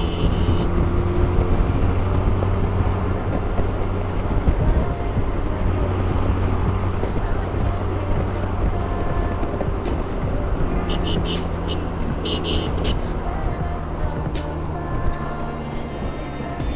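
Motorcycle cruising at steady speed: a constant rush of wind and road noise over a steady engine drone, with a few short high beeps about two-thirds of the way through.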